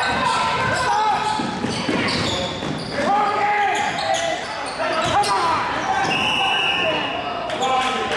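Basketball dribbling and bouncing on a hardwood gym floor, with spectators and players shouting throughout. A single steady whistle blast of about a second comes near the end, as play stops with players down on the floor.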